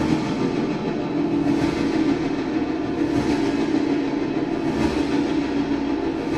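Live experimental music: a loud, dense, droning wall of sound centred on a low-mid hum, swelling faintly about every second and a half.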